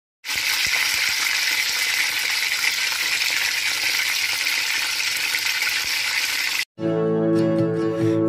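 Chicken leg quarters frying in hot oil in a pan: a steady, dense sizzle. It cuts off suddenly near the end, and music begins.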